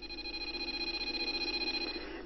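Handheld RF radiation meter sounding a steady buzzing tone with a fast flutter, slowly growing louder, as it picks up the iPhone transmitting on a call.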